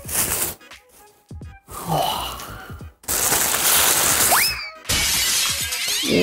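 Clear plastic wrapping crinkling as it is pulled off decorative candles close to the microphone. It comes in bursts, with the longest, loudest stretch of crinkling in the second half, and music plays along with it.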